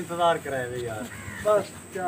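Voices of several people exchanging greetings, in short bursts of speech with a quieter stretch in the middle.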